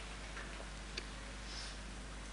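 Quiet room tone with a steady low hum and a couple of faint clicks, one about a second in.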